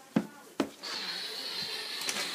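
Handling noise: two sharp knocks close together, then a steady high hiss that starts about a second in.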